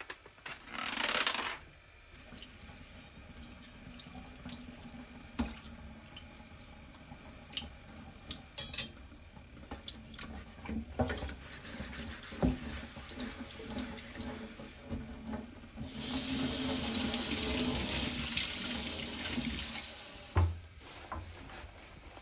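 Kitchen tap running into a stainless steel sink while dishes are rinsed by hand, with scattered light knocks and clinks of items against the sink and dish rack. About three-quarters of the way through the water runs harder for a few seconds, then stops, followed by a knock.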